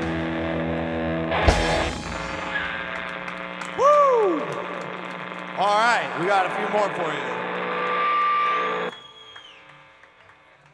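Live rock band with electric guitars, bass and drums ringing out the end of a song: a held chord, a crash about a second and a half in, sliding and bent guitar notes, then everything stops suddenly near the end.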